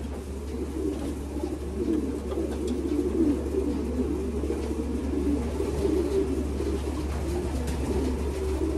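Racing pigeons cooing, low overlapping coos that run on without a break, over a steady low hum.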